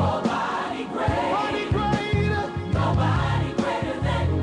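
Gospel music: a choir singing a worship song over a band with a steady bass line.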